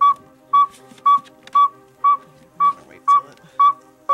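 Northern saw-whet owl's tooting advertising call played from an audio lure: a steady series of short, whistled toots, about two a second.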